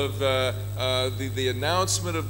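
Speech only: a voice talking through a microphone and PA system, with a steady mains hum underneath.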